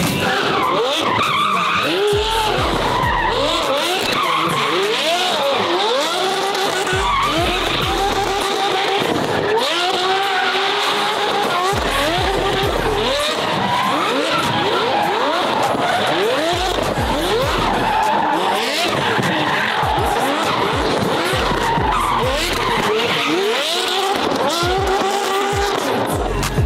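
Sports car drifting in circles, its engine revving up again and again in quick rising sweeps, one every second or two, over steady tyre skidding and squealing.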